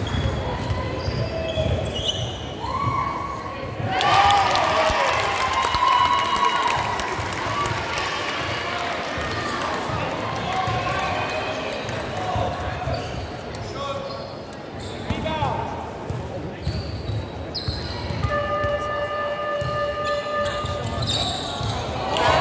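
Basketball bouncing on a hardwood court, with voices of players and spectators echoing in a large gym hall.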